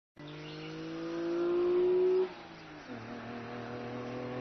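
A car engine accelerating, its pitch and loudness climbing steadily for about two seconds. It then drops off suddenly and runs on steadily at lower revs.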